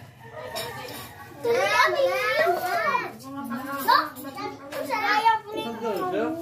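A group of children talking and calling out in high voices.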